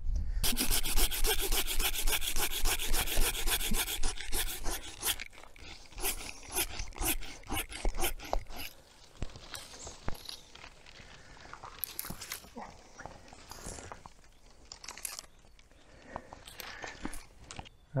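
Hand saw cutting through thick hazel stems in quick, regular strokes for the first few seconds. After that come scattered clicks, snaps and rustling of branches, quieter in the second half.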